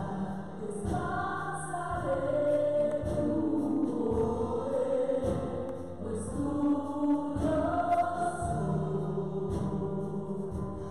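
Live gospel worship song sung by a small group of women's voices in long held notes, with band accompaniment.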